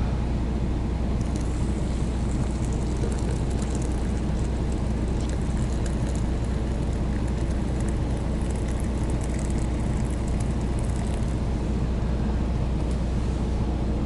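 Steady low idle rumble of a parked semi truck's diesel engine, heard inside the cab. Over it, hot water from an electric kettle pours and splashes faintly into a glass French press from about a second in until near the end.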